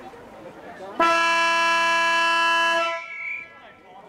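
A steady horn blast lasting about two seconds, starting abruptly about a second in and cutting off just before the three-second mark: the signal to start the quarter.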